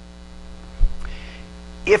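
Steady electrical mains hum on the sound system, with one short low thump a little under a second in.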